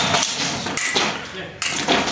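Fencing blades clicking against each other and fencers' feet stamping on the floor during an exchange: a few sharp clicks and thuds.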